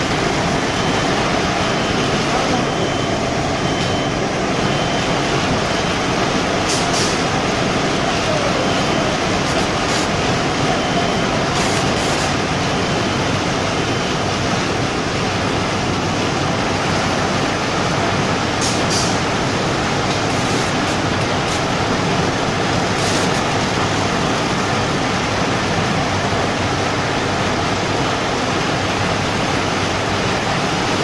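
Automatic facial tissue log saw machine running, a loud, steady, even mechanical noise, with a few brief sharp high sounds breaking through now and then.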